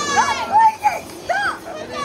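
A child's high-pitched voice giving several short excited cries, each rising and falling in pitch, over a faint steady background hum.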